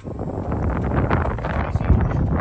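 Wind buffeting the microphone: a loud, gusty rumble without any pitched tone.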